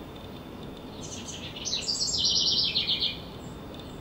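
House wren singing one song of about two seconds, starting about a second in: a rapid run of notes that steps down in pitch as it goes.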